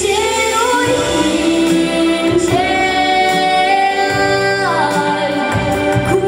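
A young girl singing a Romanian Christmas song into a microphone over instrumental accompaniment, holding long notes, with a rise in pitch about a second in and a slide down near the end.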